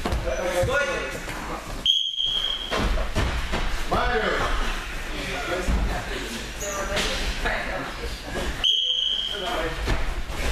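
Children's voices and chatter echoing in a large gym hall, with the soft thuds of bare feet hopping and landing on wrestling mats. A steady high electronic beep, under a second long, sounds about two seconds in and again near the end.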